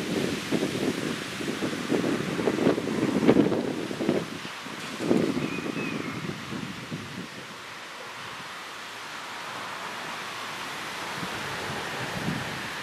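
Wind buffeting the microphone in irregular gusts for the first five seconds or so, then settling into a steady outdoor hiss.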